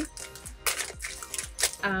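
Cookie wrapper crinkling in a few short rustling bursts as it is torn open, over steady background music; a voice comes in near the end.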